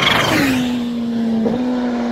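Sport motorcycle passing close at speed. Its engine note drops steeply in pitch as it goes by, then holds a steady note as it pulls away.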